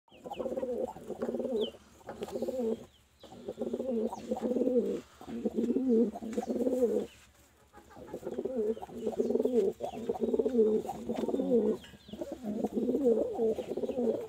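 Domestic pigeons cooing: repeated bouts of low, warbling coos, each lasting about one to two seconds, with short pauses between them.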